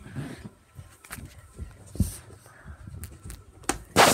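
Phone being handled and set down by hand: scattered knocks, bumps and rustling against the microphone. The loudest bump comes about two seconds in, with another strong one near the end.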